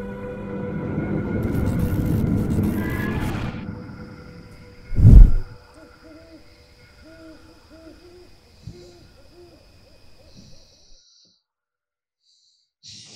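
Film sound design: a swelling rise over sustained tones ends in a loud low boom about five seconds in, followed by a string of short owl-like hoots, about two a second, that die away.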